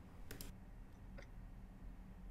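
Faint clicks from an Epson L3150 printer's control-panel button as the held network information button is let go: a short click soon after the start and a lighter tick about a second in, over faint room hum.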